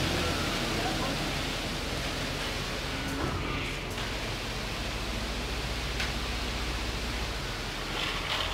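Steady noise and low hum of concrete pumping machinery running while a ground-floor slab is poured.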